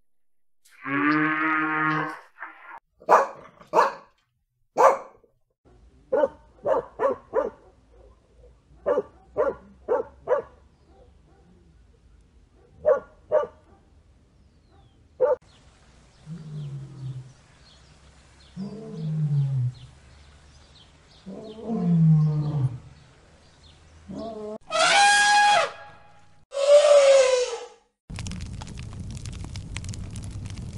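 A run of animal calls: a low call like a cow's moo at the start, then dogs barking in many short, quick barks, then three deeper calls that fall in pitch. Two loud, high-pitched calls come near the end.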